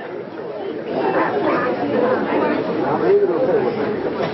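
Several people talking at once, indistinct overlapping chatter that grows louder about a second in.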